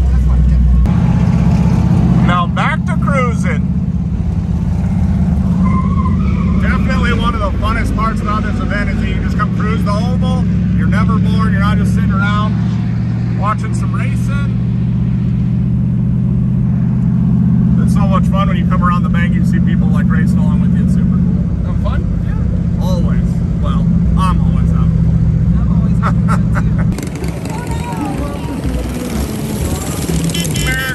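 Car engine running low and steady at slow rolling speed, heard from inside the cabin, with its note shifting once about a third of the way in and voices talking over it. Near the end the engine sound cuts off abruptly.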